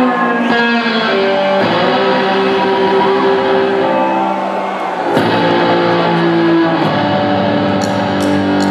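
Electric bass guitar played solo through heavy distortion so it sounds like an electric guitar, playing a slow riff of long sustained notes that change pitch a few times.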